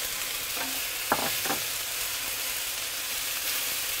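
Halved cherry tomatoes, sliced green olives and garlic sizzling in olive oil in a stainless steel sauté pan while being stirred with a wooden spoon. The sizzle is a steady hiss, with two brief sharp sounds about a second in.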